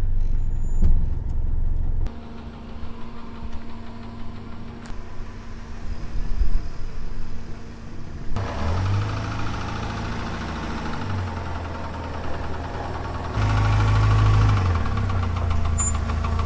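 SUV engine running at low road speed. The sound changes abruptly a few times, about 2, 8 and 13 seconds in, and is loudest in the last few seconds.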